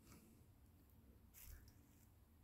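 Near silence, broken only by two faint, brief rustles: one at the start and one about a second and a half in.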